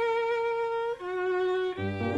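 Violin and piano duo: the violin holds one long note, then a lower one, and the piano comes in with low notes near the end.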